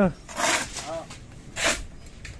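Steel shovel scraping across a concrete floor as it digs into a pile of dry sand and cement being turned by hand for mortar: two gritty scrapes about a second apart.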